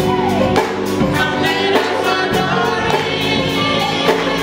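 A live band with several voices singing together over a drum kit and a steady beat.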